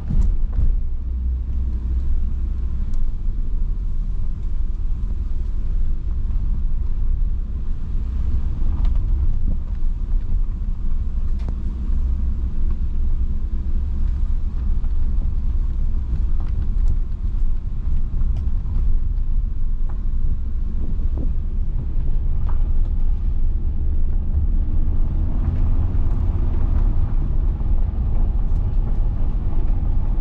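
Cabin sound of an Audi RS3 driving on a dirt road: a steady heavy rumble of tyres and road with the turbocharged five-cylinder engine underneath, and a few sharp ticks along the way. The engine note rises slightly near the end.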